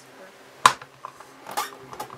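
Clear acrylic lid of a We R Memory Keepers Precision Press stamping tool coming down with one sharp click, followed by a few lighter knocks as it is pressed to stamp a cushioned red rubber stamp onto card.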